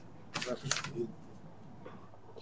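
A few short clicks and a brief faint voice sound close to the microphone, about half a second to a second in, then a low steady hiss.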